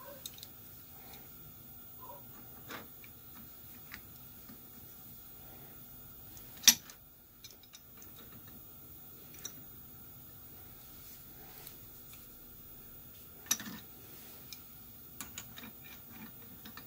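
An adjustable wrench being fitted and refitted on the square shank of a tap while hand-tapping a hole, with small scattered metal clicks and one sharp metal clink about six and a half seconds in and another, smaller one about thirteen and a half seconds in. A faint steady hum runs underneath.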